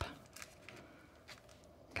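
A few faint, brief rustles and clicks of a small cardstock pouch being pinched and creased between the fingers.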